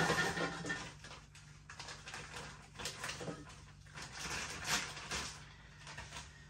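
Plastic food packet rustling as chilli cheese nuggets are tipped into an air fryer basket, with small irregular knocks and handling noises, over a faint steady low hum.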